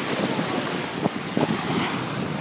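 Small waves lapping and washing onto a sandy shore, with wind rushing over the microphone.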